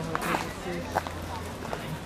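People's voices talking, with a few short clicks and a low background hum.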